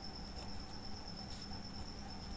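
A faint, steady, high-pitched pulsing trill of an insect such as a cricket, with soft scratching of a pen writing on paper.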